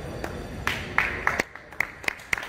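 A few scattered hand claps from an audience, single claps spaced irregularly a few tenths of a second apart.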